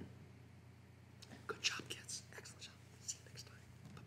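Faint whispered voice in a few short, soft bursts over a low steady hum.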